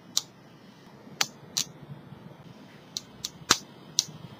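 Steel sickle scaler scraping calculus on a tooth: a handful of short, sharp clicks at uneven intervals, clustered near the end, over a quiet room background.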